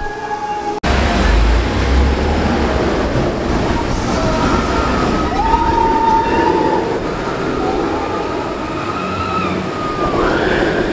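Steel roller coaster (the Incredible Hulk Coaster) running: a steady, loud rumbling roar of the train on its track that starts abruptly about a second in. A few faint, held high tones sound over it in the middle.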